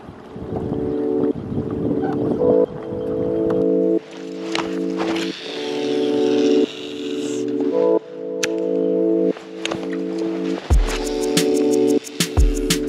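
Background music: sustained chords that change every second or two, with a beat of sharp ticks and deep bass thumps coming in near the end.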